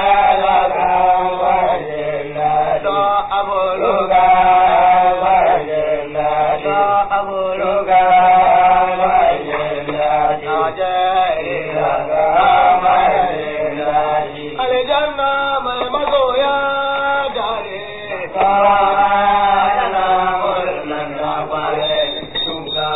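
Hausa praise song: a man's voice chanting in long, wavering melodic phrases of a few seconds each, with short breaks between them.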